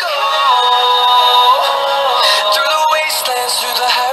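A pop song with a heavily processed singing voice playing from a Meizu Note 21 smartphone's loudspeaker during a speaker test. It sounds thin, with almost no bass.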